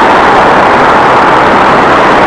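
Steady, loud noise of motor traffic on the Brooklyn Bridge roadway running beside the pedestrian walkway, an even hum of tyres and engines with no single vehicle standing out.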